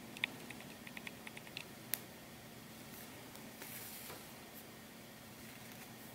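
Faint hand-sewing noise of a needle and quilting thread being worked through faux sheepskin: a quick run of small clicks, a sharper click about two seconds in, then a soft scratchy rasp as the thread is drawn through. A low steady hum sits underneath.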